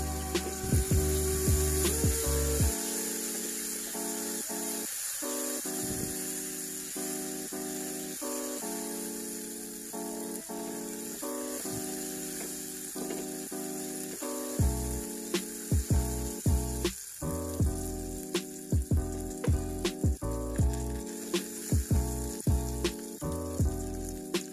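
Spice paste frying in oil in a small non-stick saucepan, a steady sizzle, stirred with a silicone spatula whose knocks on the pan come often in the second half. Background music with a simple melody plays throughout.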